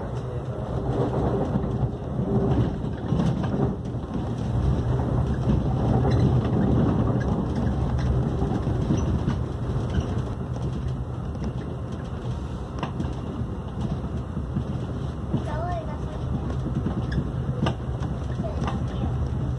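Inside an AREX 1000 Series electric train running at speed: a steady low rumble of wheels on rail with a hum underneath, no clear breaks.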